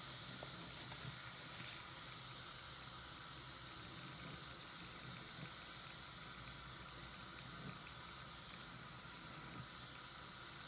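Tap water running steadily into a sink full of soap suds, with the foam fizzing. A wet sponge gives a brief squelch just under two seconds in.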